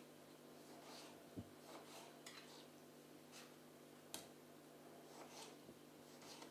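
Near silence with a few faint, scattered taps of a paring knife cutting through a tomato onto a plastic cutting board, the sharpest about four seconds in, over a steady low hum.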